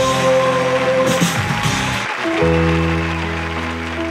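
Upbeat TV show theme music; about two seconds in it changes to a steady, held chord with a strong bass note.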